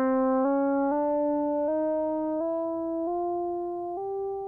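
Synthesizer tone sweeping up a fifth from C to G, pitch-corrected by Antares Auto-Tune 5 so that it climbs in semitone steps instead of gliding smoothly. It steps through C, C sharp, D, D sharp, E and F, then jumps a whole tone straight to G near the end, because F sharp is not allowed in the scale.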